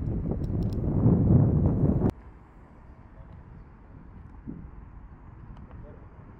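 Wind rumbling on the microphone, loud for about two seconds and then cutting off abruptly, followed by faint steady outdoor background noise.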